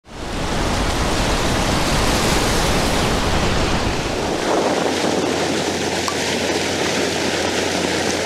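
Sea surf washing onto a pebble beach, a steady rush of breaking foam. A deep rumble under it fades out about halfway through.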